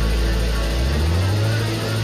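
Live rock band holding a loud, sustained chord, with a low bass note sliding up in pitch about a second in and then holding.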